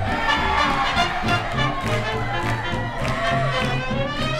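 Swing jazz music with brass instruments playing over a steady beat, the accompaniment for Lindy hop dancing.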